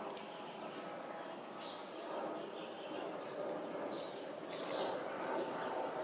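Steady high-pitched insect drone over a low background murmur.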